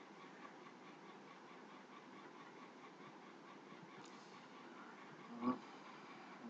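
Faint room tone and microphone hiss, with one short, slightly louder sound about five and a half seconds in.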